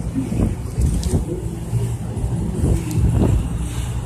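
Low, steady drone of a boat's engine running underway.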